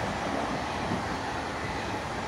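SNCF TGV inOui high-speed train passing at speed on a nearby track: a steady rushing noise of wheels on rail and air.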